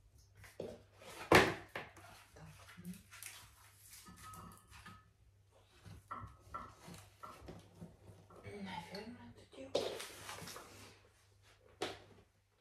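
Wood being loaded into the firebox of a tiled masonry stove: a string of knocks and clatters, the loudest a sharp knock about a second in and another near the end.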